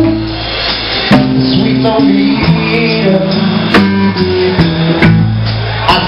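A live blues band playing, with a stepping electric bass line and drum kit hits under an amplified harmonica that is cupped against a microphone.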